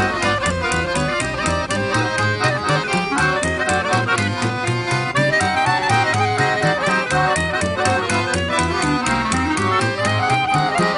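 Small Romanian folk band playing a lively tune: a clarinet leads the melody over accordion, acoustic guitar and double bass, which keep a steady beat of about four strokes a second.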